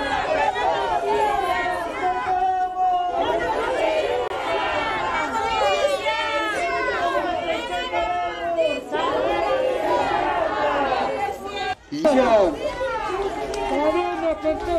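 Crowd of protesters, many voices talking and calling out over one another. Near the end, after a brief drop, comes a louder shout of "¡Justicia!"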